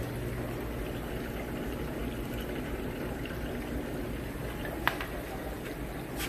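Steady bubbling and water noise from aquarium tanks running air-driven sponge filters, with one sharp click about five seconds in.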